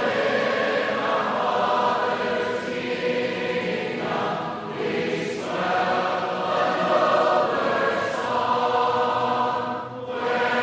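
A large congregation singing a hymn in four-part harmony, unaccompanied, the many voices blending in a full, sustained sound. The singing dips briefly near the end as one phrase ends and the next begins.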